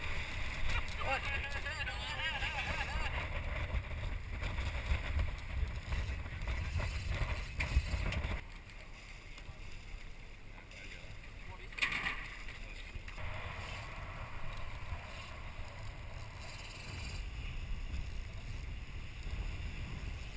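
Wind buffeting the camera microphone over a steady low rumble and the rush of water along a moving boat's hull, quieter from about eight seconds in.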